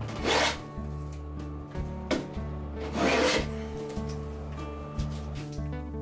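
Hand plane taking thick shavings off a strip of dark contrasting hardwood: two strokes about three seconds apart, over soft background music.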